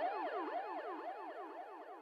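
Electronic siren in fast yelp mode, its pitch sweeping up and down about five times a second, fading away steadily.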